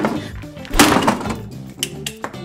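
Hard blows on a plastic Super Mario question block lamp being smashed, two hits with the louder one just under a second in, over background music.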